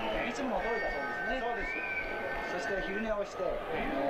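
A man talking on an old fight broadcast's soundtrack, with a faint high steady tone held through the middle.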